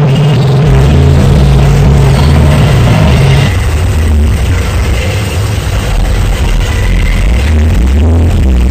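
Loud live electronic noise music: a dense wash of noise over a heavy low drone, which drops to a lower, pulsing drone about three and a half seconds in.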